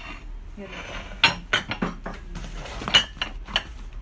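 Ceramic plates and bowls clinking against each other as they are handled and set down: a run of about six sharp clinks, two of them louder.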